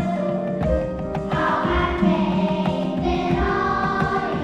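A choir singing sustained chords over a Simmons Titan 70 electronic drum kit keeping a steady beat, with regular kick-drum thumps and stick hits.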